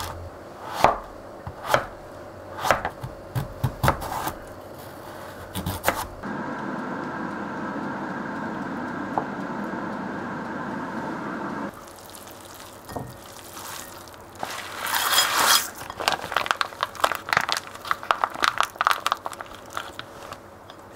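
A kitchen knife chopping zucchini on a cutting board, a sharp knock about once a second for the first six seconds. Then about five seconds of steady hiss that cuts off suddenly, and near the end a run of crinkling and crackling as a plastic sauce packet is squeezed out over a bowl of noodles and ice.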